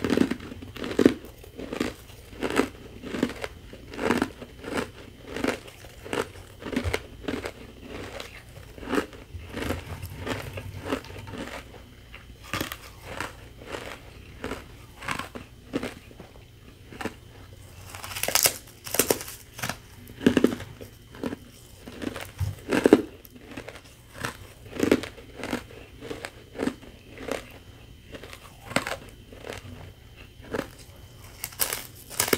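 Close-up chewing and biting of powdery carbonated ice, a thin snowy sheet of frozen fizzy water, in a steady run of crisp crunches about two a second. The loudest bite comes a little past the middle.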